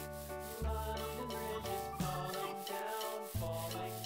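Instrumental background music with a melody and bass line, and under it a felt-tip marker rubbing over a foam ball.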